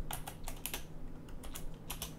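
Computer keyboard typing: a run of quick, irregular key clicks.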